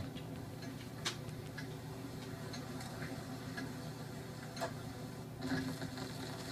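Surface noise of an old disc record turning on a turntable: a low steady hum with scattered sharp clicks.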